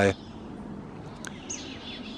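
Faint outdoor background with small birds chirping; a short, high chirp comes about one and a half seconds in.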